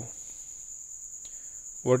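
A steady high-pitched whine runs through the background, with one faint click a little past the middle. A man's voice starts near the end.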